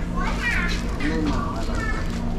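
Children's voices chattering in the background, high and gliding, over a steady low hum.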